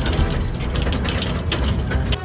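Back of a pickup truck jolting over a very rough dirt road: a heavy low rumble with irregular rattling and clanking of the truck's metal frame, under background music.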